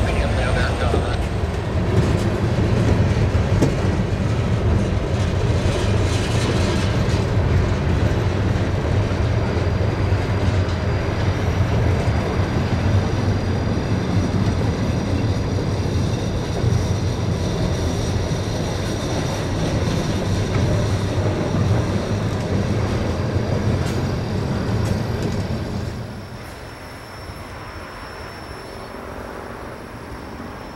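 Freight cars, mostly covered hoppers, rolling past close by: a steady rumble of steel wheels on rail, with a faint thin high squeal running through the middle. About 26 seconds in the sound drops suddenly to a quieter, more distant rolling rumble.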